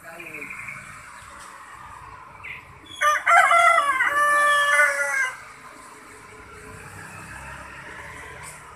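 A rooster crowing once, about three seconds in: a single crow of a little over two seconds, broken at the start and then held, over a faint steady background.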